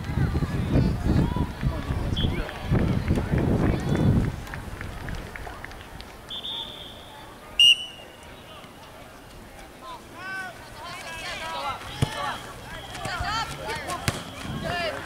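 Outdoor soccer-field sound: a low rumble on the microphone for the first few seconds, then a single short, sharp referee's whistle blast about halfway through, followed by distant shouts of players and spectators.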